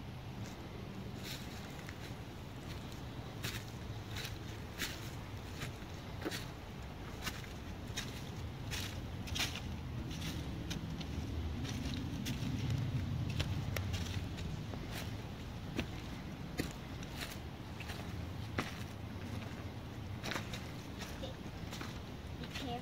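Footsteps on dry fallen leaves and twigs, irregular sharp crackles about one or two a second, over a low steady rumble that swells around the middle.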